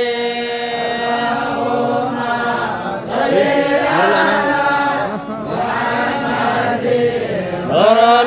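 A group of singers chanting an Islamic devotional song in praise of the Prophet Muhammad (salawat), voices together with long held notes and slow rises and falls in pitch. Brief breaks come about three seconds in and again past five seconds.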